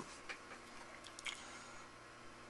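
A few faint light clicks from hands handling a small Allen wrench and small metal parts on a paper towel.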